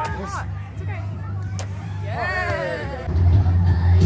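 Background voices of people, with one drawn-out rising-and-falling call about two seconds in, over music with a heavy bass that gets louder about three seconds in.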